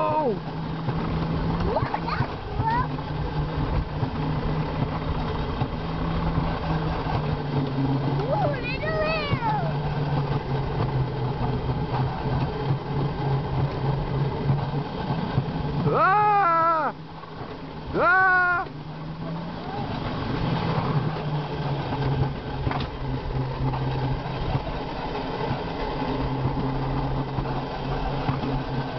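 Alpine coaster sled running fast along its steel tube rails: a steady rumbling hum from the wheels. Three short rising-and-falling cries from a rider are heard in the middle, the last two close together.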